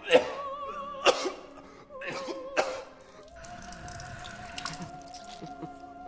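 Operatic singing with a wide vibrato, broken by three sudden coughing bursts about a second apart in the first three seconds. From about three seconds in, the music settles on one long steady note.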